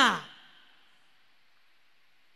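The end of a spoken word falls steeply in pitch and trails off into a breathy, sigh-like fade within the first half second. Then near silence: room tone.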